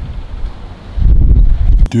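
Wind buffeting the microphone: a low rumble that swells into a loud gust in the second half and cuts off suddenly with a click.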